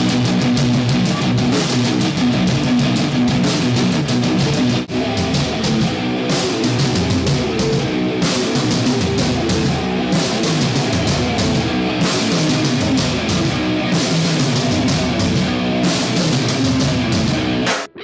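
Metal band music, electric guitars over a drum kit, played continuously. It dips briefly about five seconds in and cuts off abruptly just before the end.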